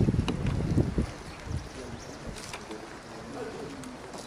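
Low, gusty rumble of wind buffeting the microphone for about the first second, then a quieter outdoor background with faint distant voices.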